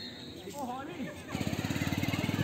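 A small engine running with a rapid, even low putter. It starts loudly about a second and a half in and keeps going.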